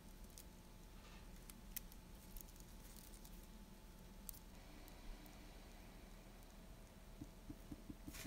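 Near silence, with a few faint light ticks as fingers settle porcupine quills into a pot of dye.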